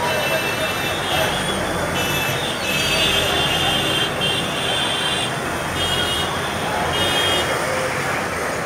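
Heavy city traffic and people's voices rising from the road below, with repeated short, high-pitched horn blasts sounding again and again.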